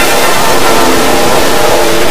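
Loud, heavily distorted electronic sound effect of a logo animation, pitch-shifted and clipped in the 'G Major' editing style. A dense noisy wash with a few faint steady tones underneath.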